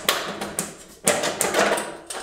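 Sheet-metal dust-extraction ducting being worked by hand overhead: metal scraping and clattering, with two sharp knocks, one at the start and one about a second in.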